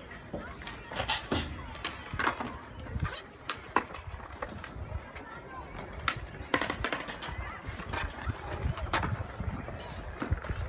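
Faint voices in the background, with scattered sharp taps and clicks.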